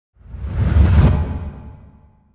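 Whoosh sound effect with a deep rumble, swelling to a peak about a second in and then fading away.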